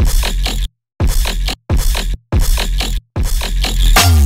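Dubstep drop with heavy sub-bass, playing back in short chopped bursts of about half a second with silent gaps between them. It runs through Ableton's Saturator on the master bus in Soft Sine mode with the drive being raised, which adds saturation to the mix.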